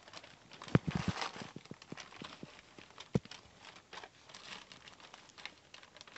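Puppies scrambling about on blankets in a wire pen: soft rustling of bedding with scattered light knocks and clicks, the sharpest a cluster about a second in and one just after three seconds.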